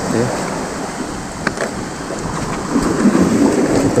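Steady rush of sea surf on a rocky shore, swelling louder near the end, with a couple of light handling clicks about one and a half seconds in.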